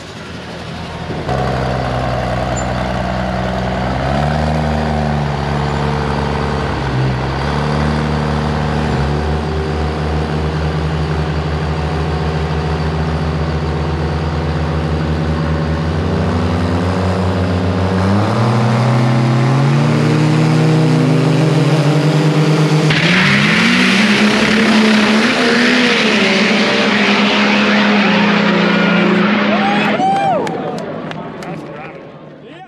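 Drag-racing Cummins inline-six diesel running at the starting line, its pitch holding steady and then stepping up and down several times. About 23 seconds in it turns louder and harsher as the truck launches down the strip under full power.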